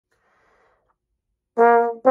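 Trombone playing a single note that starts with a clean, sudden attack about a second and a half in and is held, rich in overtones.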